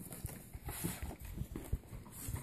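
Handling noise: soft, irregular low thumps with a brief rustle, as an opened cardboard box and a sheet of paper are moved about.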